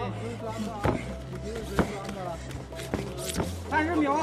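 Three sharp smacks of punches landing in ground-and-pound, under a corner coach shouting instructions and a steady background music track.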